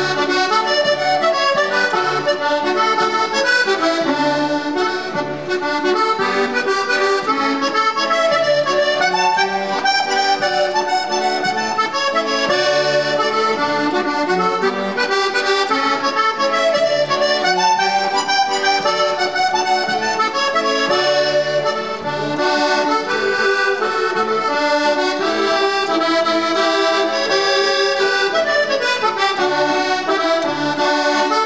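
Solo diatonic button accordion playing a waltz: a running melody over regularly recurring bass notes.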